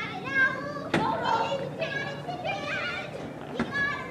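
Several distant voices calling and shouting across a soccer field, too far off to make out words. Two sharp knocks cut through, one about a second in and one near the end.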